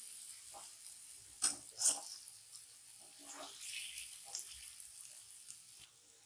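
Boiled egg pieces and masala frying in a kadhai: a faint steady sizzle, with a few soft spatula strokes against the pan as they are gently stirred.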